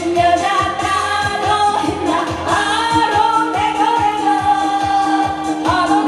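A woman singing a Korean trot song live into a microphone over backing music with a steady dance beat, holding one long note through the second half.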